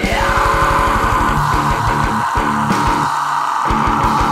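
Loud rock music with no singing: a sustained distorted electric guitar over fast kick-drum hits, the hits packed tightest at the start.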